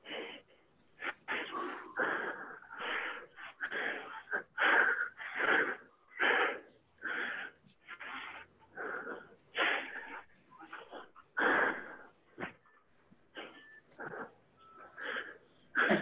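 A man breathing hard through the mouth, a quick run of loud breaths one after another, as he swings a longsword. He breathes out on each blow and in on each recovery.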